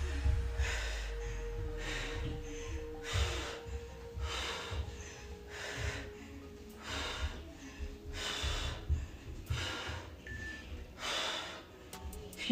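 A woman breathing hard from exertion, with short forceful breaths through nose and mouth about once a second in time with a repeated exercise movement.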